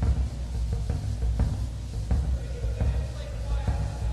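Studio drums being played: irregular drum strikes, heavy in the low end, over a steady low rumble.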